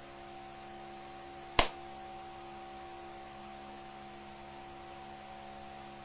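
Steady electrical hum made of several fixed low tones, broken once by a single sharp click about a second and a half in.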